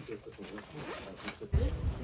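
Zip of a handbag being pulled in a few short scratchy strokes, under quiet background talk. About a second and a half in, this gives way to a louder low rumble of wind on the microphone.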